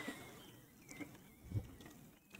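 Faint forest nature-sounds recording played over loudspeakers in a hall: a few thin bird chirps over a soft hiss.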